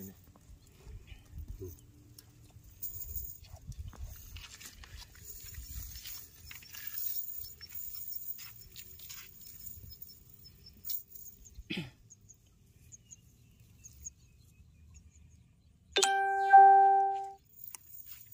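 Faint rustling and clicking of a wet nylon cast net being handled and picked over, then near the end a loud, steady electronic chime lasting about a second and a half.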